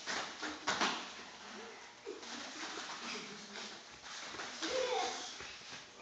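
A few quick thuds in the first second, typical of children's feet hitting foam floor mats as they dodge, followed by faint children's voices.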